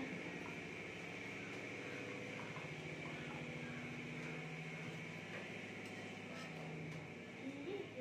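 A steady low motor hum with a fine, rapid pulse.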